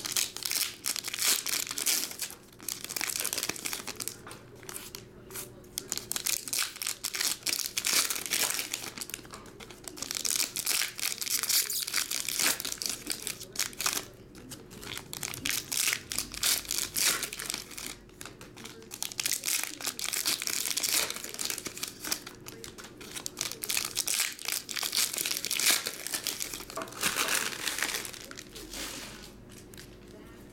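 Foil trading card pack wrappers being torn open and crinkled by hand. They crackle in repeated bursts with short lulls between.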